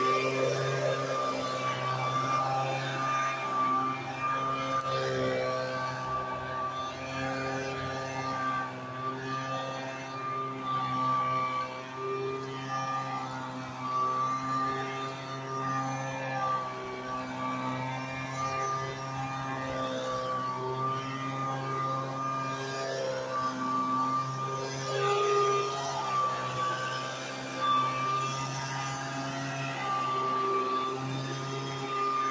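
Handheld leaf blower running steadily: a droning motor note with a rush of air, its loudness rising and dipping a little as it is swung along the sidewalk.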